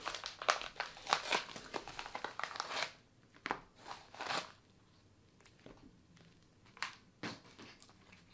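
Yellow padded mailer crinkling and rustling as it is handled and emptied, for about three seconds, then a few short, light clicks and rustles as hard plastic graded card cases are slid out and handled.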